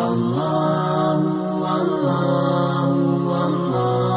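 Background devotional vocal chant in the style of a nasheed, sung in long held notes that shift pitch a few times.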